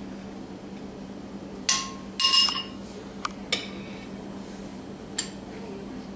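Kitchen utensils and dishes clinking and knocking: a knock about a second and a half in, a louder ringing clatter just after, then a few light clicks.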